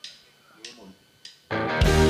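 A few sharp clicks in an even beat, about two-thirds of a second apart, like a drummer's stick count-in, then a small live band of guitars, bass and keyboard comes in loudly about one and a half seconds in, holding a chord at the start of a worship song.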